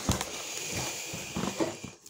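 Cardboard rustling and scraping as a boxed pair of headphones is slid out of a cardboard mailer box, with a few light knocks about one and a half seconds in.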